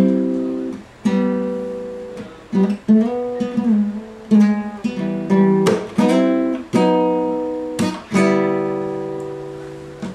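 Nylon-string classical guitar played unaccompanied: a slow run of chords, each struck sharply and left to ring and fade before the next.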